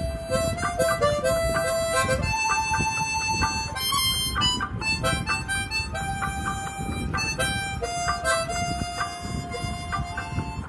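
Harmonica playing a Hindi film song melody, alternating long held notes with short runs, over a karaoke backing track.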